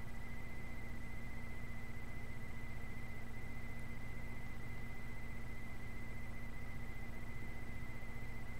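Steady low electrical hum with a thin, high steady whine above it and faint hiss: the background noise of the recording setup, with nothing else happening.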